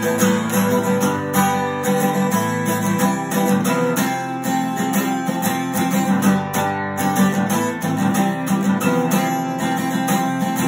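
Takamine acoustic guitar strummed in chords in a quick, even rhythm.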